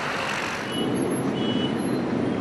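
Road traffic noise from stalled and idling vehicles in a jammed city street, a steady rumble that grows slightly louder about two-thirds of a second in.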